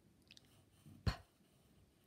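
Faint pencil writing on paper, with a single short breathy 'p' letter sound spoken about a second in.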